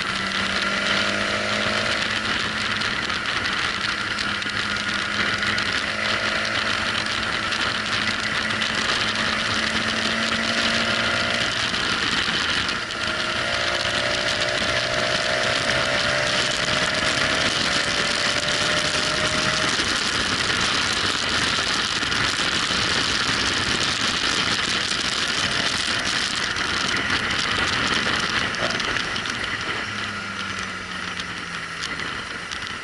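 Motorcycle engine running under way, with steady wind and road noise on the bike-mounted microphone. The engine's pitch rises gently several times as the bike accelerates.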